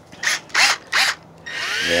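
Power drill fitted with a green scrub-pad brush attachment, spinning freely: the trigger is blipped three times in quick bursts, then held from about three-quarters of the way in, the motor whine rising as it spins up.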